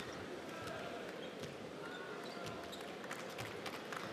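Low, steady murmur of an arena crowd, with a basketball bouncing on the hardwood court a few times at irregular intervals.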